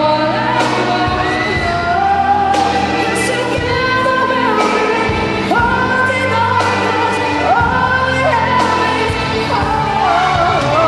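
Live pop ballad: a girl singing a melody of long held notes into a microphone, backed by a band of drums, electric guitar and keyboard, with drum and cymbal strikes about every two seconds.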